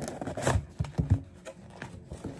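Cardboard mailer box being handled and opened: scraping of the cardboard lid and tab, with a cluster of short knocks around the middle.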